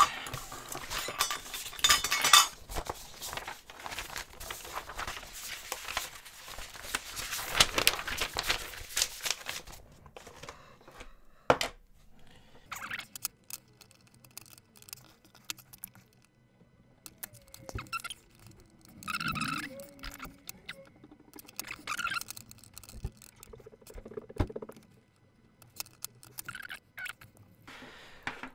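Hands working on a DIY guitar effect pedal at a desk. For about the first ten seconds there is continuous rustling and scraping. After that come scattered small clicks and knocks as the metal enclosure and its parts are handled.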